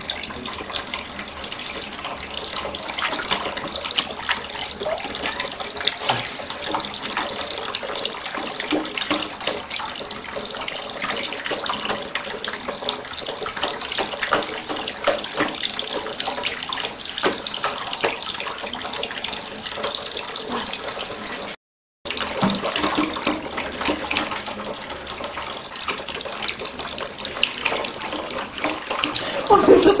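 A thin stream from a kitchen tap running and splashing onto a glass bowl and plate in a sink, with a cat's paws dabbling in the water. The sound drops out for a split second about two-thirds of the way through.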